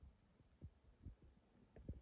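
Near silence: room tone with a few faint low thumps.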